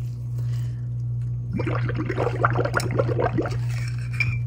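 Soapy water and dish-soap foam being scooped with a spoon and worked onto wet resin: about two seconds of wet, crackling squishing in the middle, over a steady low hum.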